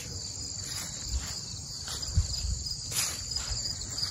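Crickets chirping in a steady, high-pitched trill, with a few soft low bumps under it.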